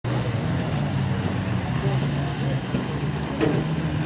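Modified stock car engines running steadily on a dirt oval track, a low even drone with faint voices mixed in.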